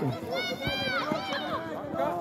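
Children's voices shouting and calling out during a youth football game, several high-pitched calls overlapping.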